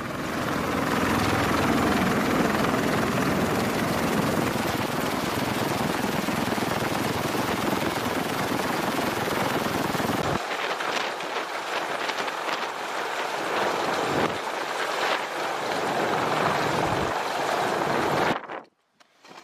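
Marine Corps CH-53 heavy-lift helicopter running on the ground, its rotor and turbine noise loud and steady. The deep rumble drops away abruptly a little past halfway.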